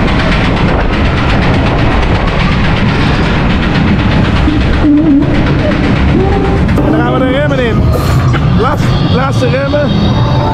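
Spinning roller-coaster car running along its steel track, with a loud, steady rumble and rattle of the wheels. Riders' voices call out over it from about seven seconds in.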